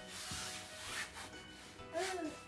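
Soft rustling and rubbing of fabric as a toddler shifts about in a high chair's mesh storage basket, mostly in the first second, over quiet background music.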